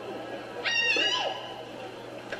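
A child's high-pitched karate kiai shout, held for about half a second and starting about two-thirds of a second in, during a kata performance, over background music and hall murmur.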